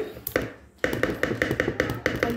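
Metal spoon tapping rapidly against the rim of a mixing bowl, about seven taps a second, knocking margarine off into the bowl. There are a few separate knocks first, then the fast tapping starts about a second in.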